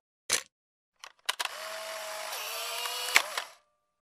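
A camera clicking, then a motor whirring for about two seconds with a sharp click near the end.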